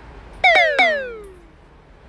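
Squeaker in a dog's plush toy squeaking three times in quick succession, about half a second in. Each squeak starts sharply and slides down in pitch as it fades.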